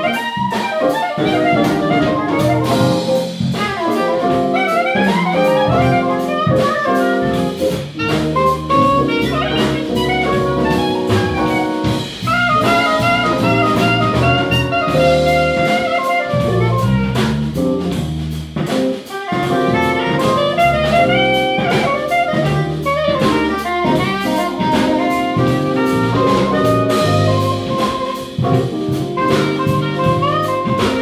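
Live jazz-funk band playing: saxophone carrying the melody over electric bass, drum kit and electric keyboard.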